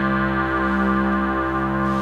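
Minimoog analog synthesizer holding a steady droning chord. Its oscillators are subtly beating together, giving the slowly pulsing, 'breathing' warmth typical of analog synths.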